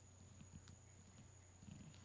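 Near silence: faint background with a steady thin high-pitched tone and a low hum, and one faint tick partway through.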